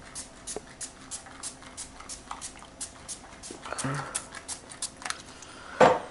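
A dog barking and yelping faintly, with one louder, sharp bark near the end, over light irregular clicking.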